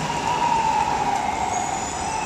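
City street traffic with a steady high-pitched tone that comes in suddenly and holds for several seconds, sagging slightly in pitch.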